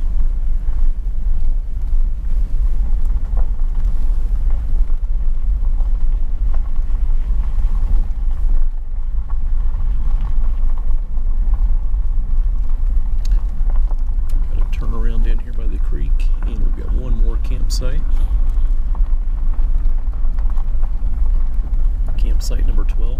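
Vehicle driving slowly on a gravel road: a steady low rumble of engine and tyres.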